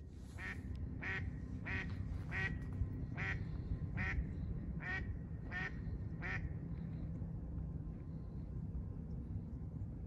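Duck quacking in a steady series, about nine quacks roughly two-thirds of a second apart, stopping a little after six seconds in.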